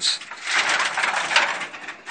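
Rusty corrugated metal roofing sheet being laid down and slid over another sheet, a scraping metal rattle lasting about a second and a half.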